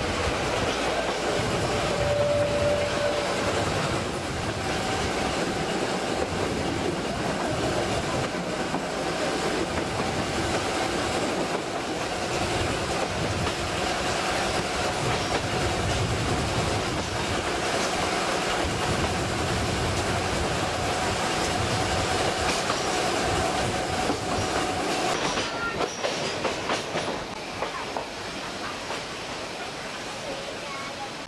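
Narrow-gauge (760 mm) train heard from an open passenger coach, its wheels running over the rails with a steady rolling noise and clickety-clack. A thin steady whine runs through most of it. About 25 seconds in, the noise falls away as the train slows.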